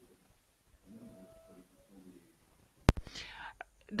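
A faint, low voice murmuring over a call line, then a single sharp click about three seconds in, followed by a short hiss and a few small clicks.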